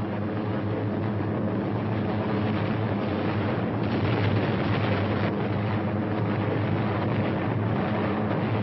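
Multi-engine piston aircraft droning steadily in flight, the sound of a B-24 Liberator bomber's radial engines.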